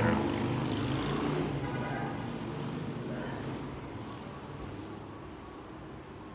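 A low, steady engine drone, loudest at first and fading away over the next few seconds, like a vehicle or aircraft passing by.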